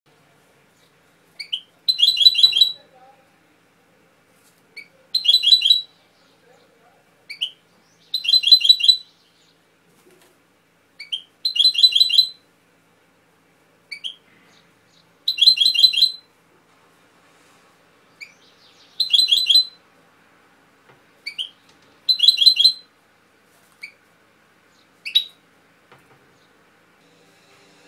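European goldfinch singing: the same short phrase seven times, every three to four seconds, each a quick rising note or two and then a bright, rapid trill of about a second, with one short note near the end.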